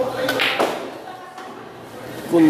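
Background voices with one sharp click of billiard balls striking about half a second in.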